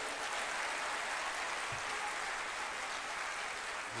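Audience applauding, a steady clatter of many hands.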